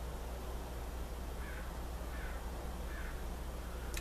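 Faint bird calls, three short falling calls in quick succession starting about a second and a half in, over a steady low hum.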